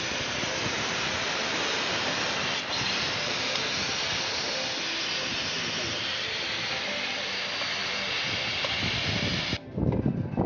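Steady hiss of refrigerant gas escaping from a loosened flare-nut joint at a mini-split outdoor unit's service valve, where the unit was leaking. It cuts off suddenly near the end.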